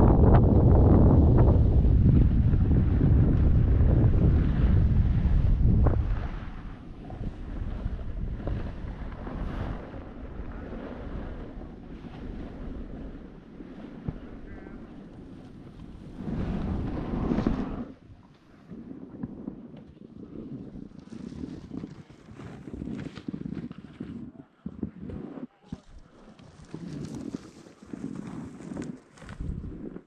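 Wind noise on a body-worn camera's microphone while riding down a groomed ski run: loud and low for the first six seconds, then much quieter and uneven, with another loud gust about sixteen seconds in.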